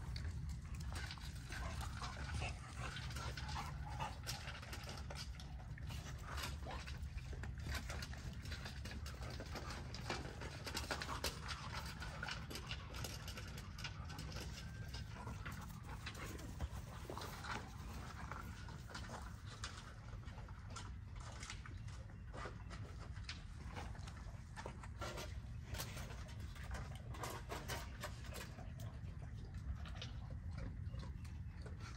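A dog panting and whining faintly over a low steady hum, with scattered short clicks and rustles that come thicker in the last third.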